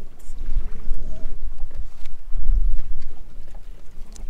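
Wind buffeting the microphone on an open boat: a loud, uneven low rumble that swells and fades.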